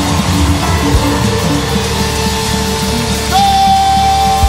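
Live cumbia band playing: bass and percussion keep a steady beat, and a long held high note comes in about three seconds in.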